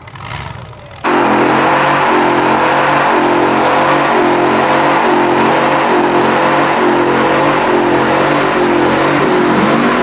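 Pickup truck doing a burnout: its engine is held at high revs with the hiss of spinning, smoking tyres, loud and steady. The sound starts abruptly about a second in.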